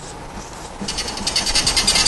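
Felt-tip marker squeaking and scratching on a whiteboard as symbols are written: a fast, high, chattering run of strokes that starts about a second in and grows louder.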